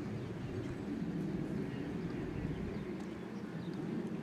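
Steady, low outdoor background noise with no distinct events standing out.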